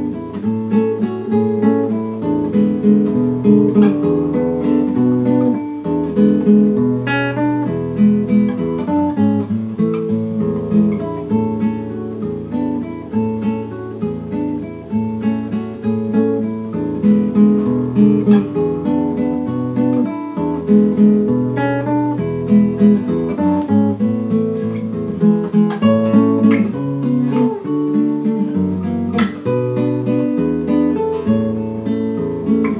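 Background music of acoustic guitar: a steady stream of plucked notes over a moving bass line.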